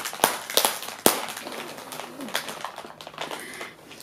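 Plastic cookie-packet wrapper being torn and peeled open, giving a few sharp crackles in the first second followed by softer crinkling.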